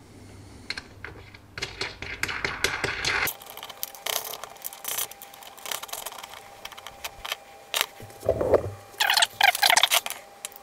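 Steel nuts and bolts clinking and clicking against threaded studs and a steel plate as they are fitted by hand: a run of sharp metallic clicks, busiest just before the middle and again near the end.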